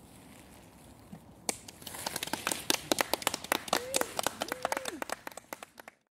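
A few people clapping, starting suddenly about a second and a half in as uneven, closely spaced claps that carry on to the end. Two short pitched calls rise and fall over the clapping near the end.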